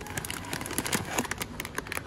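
Plastic granola bag crinkling as it is grabbed and pulled from a supermarket shelf: a quick, irregular run of crackles.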